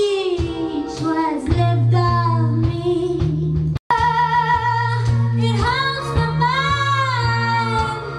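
A woman singing a folk-jazz song live into a handheld microphone, her sustained notes wavering with vibrato over held low accompaniment notes. The sound cuts out for a split second a little before halfway.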